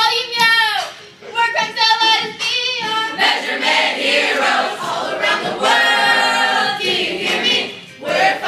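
A group of children singing together, a rap-style song sung in chorus in short phrases that become a fuller, continuous chorus from about three seconds in.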